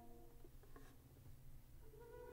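Near silence between very soft notes of a muted violin and cello: the previous held tones fade out at the start, a couple of faint ticks follow, and a new soft held note enters just before the end.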